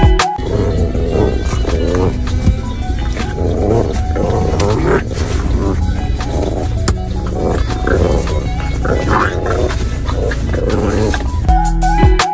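Background music with a steady bass, over which an English bulldog puppy makes rough, noisy animal sounds repeating about twice a second.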